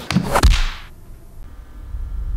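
A fast whoosh sound effect for a quick movement, with a low thud at its peak about half a second in. After it dies away, a low rumble slowly builds near the end.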